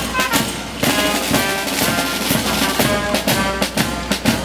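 A marching street band playing a traditional New Year's song: a brass melody carried over a steady beat of bass drums and jingling tambourines.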